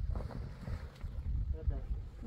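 Wind buffeting the microphone, with heavy canvas tent cover rustling as it is pulled over the metal frame; a voice speaks briefly near the end.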